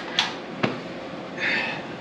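A single sharp click from the Honda Foreman 450ES's electric shift control as it is worked to shift back into neutral, with a couple of soft hissy noises around it.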